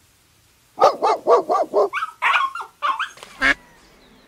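A dog barking: a quick run of about five barks starting about a second in, then a string of higher-pitched yelps, the last bark just before the end.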